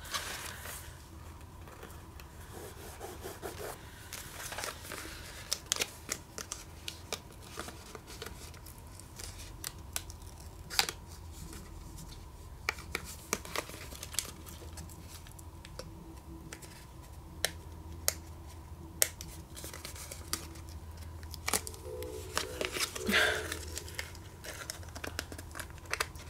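Paper sticker sheet being handled and alphabet letter stickers being peeled off their backing: scattered small clicks, crinkles and rustles of paper, heard over a faint steady hum. The letters stick stubbornly and are hard to lift without tearing.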